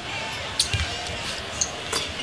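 A basketball dribbled on a hardwood court, a few sharp bounces over the steady noise of an arena crowd.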